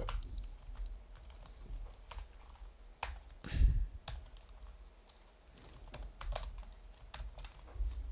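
Typing on a computer keyboard: irregular runs of key clicks as code is entered. About three and a half seconds in there is one louder dull thump.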